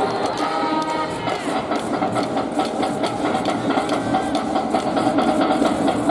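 Cheering band in the stands playing brass with a fast drumbeat, with crowd voices mixed in.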